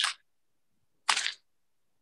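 Two short clicking noises, one at the very start and a louder, slightly longer one about a second in.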